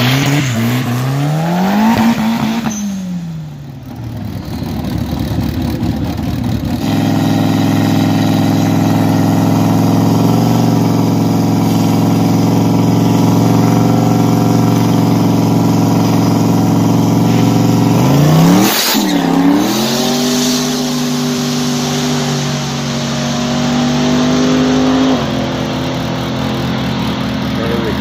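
Car engine revving up and back down, then running at a steady high pitch for a long stretch, with a sharp dip and climb in pitch about two-thirds of the way through.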